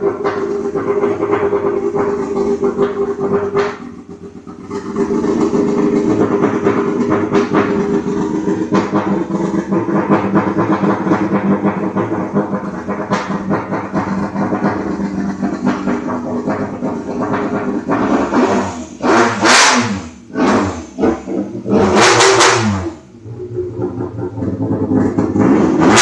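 Race-prepared VAZ-2102's tuned four-cylinder engine running on its first start, dipping briefly about four seconds in, then revved hard in a series of sharp throttle blips from about eighteen seconds on, each rev climbing fast and falling away.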